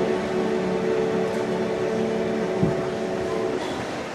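Choir with chamber orchestra and organ holding the final chord of a sacred anthem, a steady sustained chord that stops near the end.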